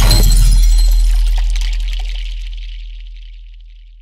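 Title-card sound effect: a deep cinematic boom with a bright, crackling high shimmer on top, dying away slowly over about four seconds.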